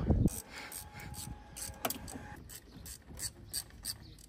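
Hand ratchet clicking in short strokes, about three clicks a second, as the bolts holding the airbag behind a BMW E36 steering wheel are undone.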